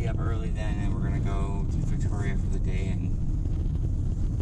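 Steady low road and engine rumble inside a moving car's cabin, with a woman talking over it.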